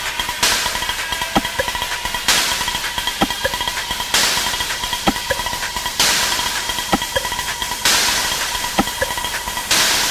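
Breakdown in an electronic dance track with no bass drum: a burst of hiss that starts sharply and fades, repeating about every two seconds, over steady high tones and fast light ticking.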